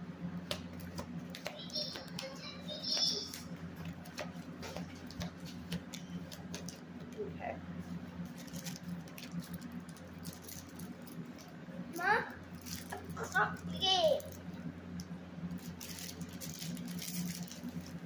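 Tarot cards being handled, shuffled and drawn by hand: a run of soft, irregular clicks and patters over a steady low hum.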